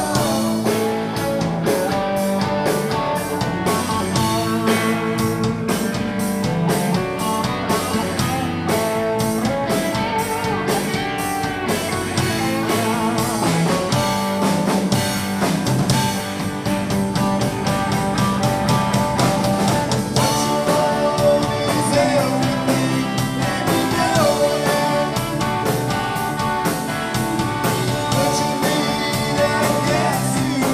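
Live rock band playing: electric guitars, electric piano and a drum kit, with sung vocals over a steady drum beat.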